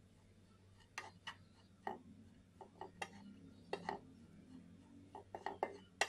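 Wooden spatula scraping and knocking against a non-stick frying pan as it stirs and turns thick semolina and banana halwa: a dozen or so irregular scrapes and taps.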